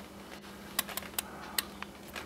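Quiet room with a steady low hum, broken by about five faint, sharp clicks in the second half.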